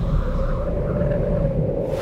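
Trailer sound design: a deep low rumble under a steady held tone, with faint wavering higher tones drifting above it.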